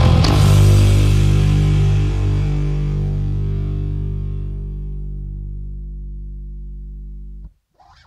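The final chord of a punk rock song, distorted electric guitar together with an electric bass (a Gould Stormbird through a Zoom B2 effects pedal), struck once and left to ring, slowly fading. It cuts off abruptly near the end.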